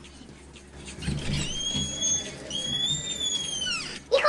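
Two long, high whistled tones, each held about a second, the second one gliding down as it ends.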